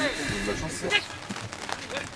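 Indistinct voices calling across a football pitch during play, faint, with a clearer voice fragment at the very start.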